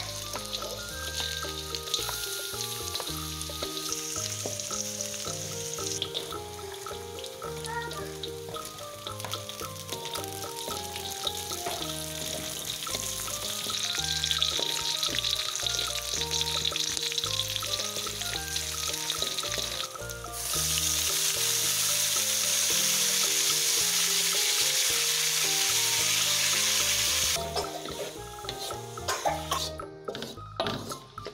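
Chilies and sliced shallots frying in hot oil in a wok and stirred with a wooden spatula: a steady sizzle under background music. About two-thirds of the way through the sizzle turns much louder and even for about seven seconds, then drops off suddenly.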